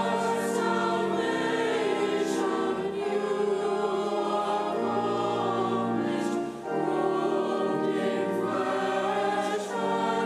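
Church choir singing a hymn in sustained chords over a steady organ accompaniment, with a short breath between phrases about two-thirds of the way through.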